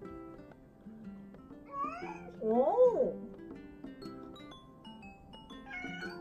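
A cat meowing twice about two seconds in: a short rising call, then a louder, longer meow that rises and falls. Soft background music plays underneath.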